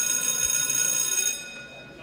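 A school-bell sound effect ringing, stopping about a second and a half in and dying away.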